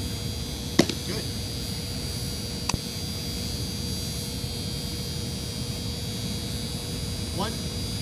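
A pitched baseball popping into a catcher's leather mitt about a second in, one sharp smack, over a steady background hum. A fainter click follows about two seconds later.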